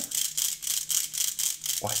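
A hollow Meffert's 2x2 puzzle cube being turned, its internal spring mechanism giving a rapid, even run of light clicks that sounds like a bicycle wheel.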